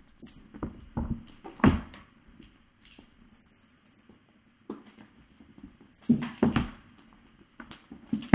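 Kittens at play: a small bell in a cat toy jingles in three short bursts, the longest near the middle. Soft thumps and scuffles of paws and bodies on the floor come between them.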